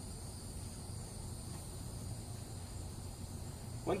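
Insects chirring steadily in the background, a faint constant high trill.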